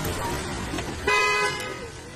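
A car horn gives one short honk about a second in, over street noise and voices.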